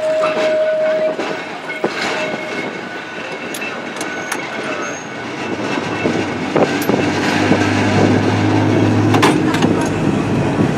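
Heritage open-top 'boat' tram running along the promenade: a steady rumble of wheels on the rails with scattered clicks and knocks. A steady tone sounds in about the first second, and a low hum comes in about seven seconds in.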